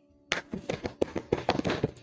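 Tarot cards being shuffled by hand: a quick run of soft card clicks and taps starting about a third of a second in.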